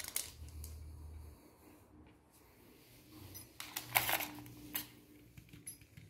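Faint handling noise in a quiet tiled room: small clicks and soft rustles, with a louder brushy rustle about four seconds in.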